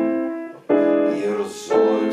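Piano playing a slow chordal passage: a melody line over sustained chords, with a new chord struck about two-thirds of a second in and again near the end, each left to ring and fade.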